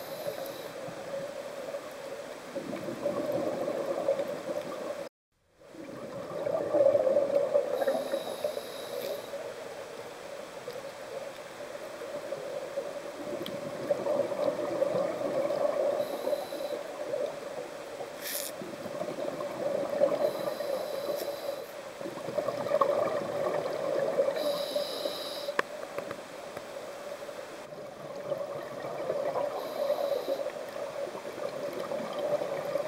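Scuba diver's regulator heard underwater: bubbles gurgling and breathing hiss that swell and fade every few seconds. The sound drops out completely for a moment about five seconds in.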